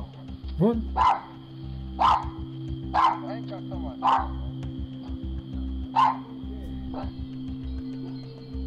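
Dog barking in short single barks, roughly once a second with a gap near the middle, picked up by a doorbell camera's microphone.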